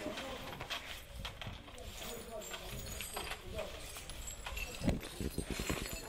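Irregular knocks and clatter of debris with faint voices in the background; a quick run of knocks about five seconds in is the loudest part.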